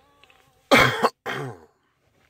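A man coughs twice about a second in, the first cough the louder.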